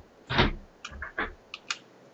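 Keystrokes on a computer keyboard: a quick run of about six clicks and knocks, the first, about half a second in, the loudest with a dull thump under it.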